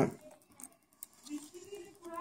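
Faint clicks and taps from hands handling laptop internals during reassembly, with a soft voiced hum in the second half.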